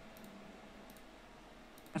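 Quiet room tone with a steady low hum and a few faint clicks, a computer mouse clicking the video player's controls.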